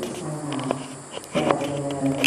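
A low voice intoning in long, level held notes with short breaks between them, with a few soft clicks in between.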